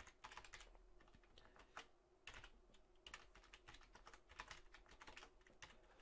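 Faint computer keyboard typing: quick, irregular keystrokes in short runs with brief pauses, entering an IPv6 address.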